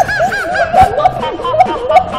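People laughing uncontrollably in quick, repeated 'ha-ha' bursts.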